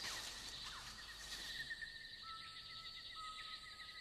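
Faint tropical forest ambience: a steady high drone runs throughout, and two long, level whistled notes join it in the second half.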